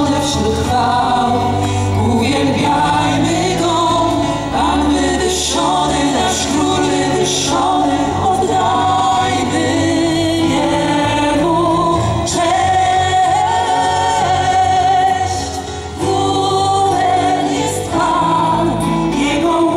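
Live Christian worship music: a group of voices singing together over a band with a steady bass line, amplified through a stage sound system. The music drops briefly near the end before picking up again.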